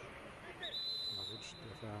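Referee's whistle: one long, steady, high blast that starts about half a second in and lasts just over a second, over players' shouts on the pitch.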